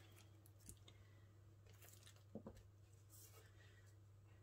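Near silence: a low steady hum, with faint rustles and light taps of small paper die-cuts being handled and pressed onto a card. One slightly louder soft sound comes a little past halfway.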